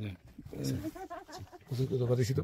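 Quiet talking from a person on the phone recording, words unclear.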